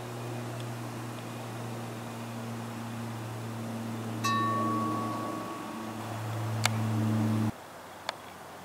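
Steady low propeller drone of a Lockheed Martin AC-130J's four turboprop engines circling overhead, swelling toward the end and then cutting off suddenly. About four seconds in, a wind chime rings once and fades over a couple of seconds.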